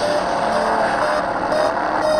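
Movie trailer soundtrack music played back: a loud, dense, steady wash of score with a few held tones.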